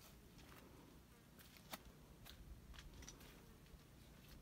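Near silence: faint outdoor hush with a few soft, irregular clicks.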